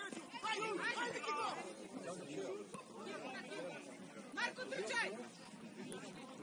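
Voices calling out across an open football pitch during play, two bursts of shouting, the first right at the start and the second about four and a half seconds in, over steady outdoor background noise.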